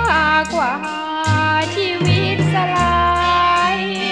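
Thai popular song: a woman sings in a high voice over a band with a bass line, holding one long note with vibrato near the end.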